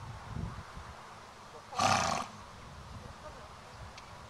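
Arabian horse snorting once, a short, noisy blast of air through the nostrils lasting about half a second, a little under two seconds in.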